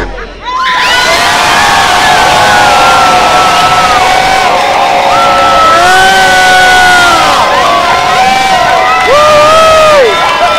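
A large crowd cheering and shouting, with high whoops, breaking out of a brief lull about half a second in and staying loud.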